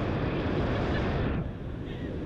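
Wind rushing over a camera microphone during a tandem parachute descent under an open canopy, easing suddenly about one and a half seconds in.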